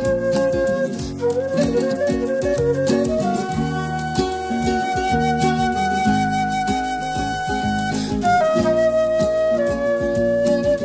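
Concert flute solo over piano and bass accompaniment. About a second in the flute plays a quick wavering run, then holds one long high note for about four seconds, and moves to lower notes near the end.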